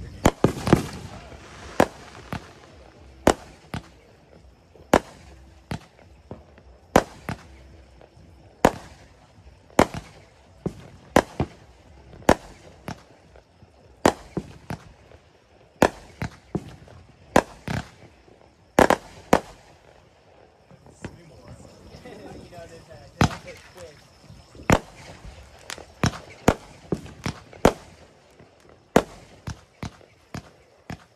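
Aerial fireworks bursting overhead: an irregular run of dozens of sharp bangs and pops, sometimes two or three in quick succession, with a loud cluster at the start and another a little before the middle.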